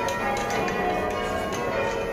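Church tower bells rung full-circle by rope, heard from the ringing room below. Several bells strike in turn, their tones ringing on and overlapping.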